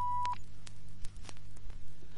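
A single steady electronic beep about a third of a second long, the kind of tone used to cue a filmstrip to advance to the next frame. It is followed by a low steady hum with faint crackle from an old soundtrack.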